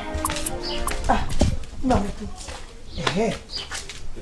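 Background music with steady held tones and a light ticking beat fades about a second in, giving way to several short wordless vocal calls that rise and fall in pitch.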